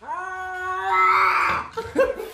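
Ginger Scottish Fold cat yowling: one long drawn-out call that rises at the start, holds its pitch and grows louder before breaking off, then a brief shorter sound near the end. It is the agitated yowl of a cat in a defensive, arched-back stance.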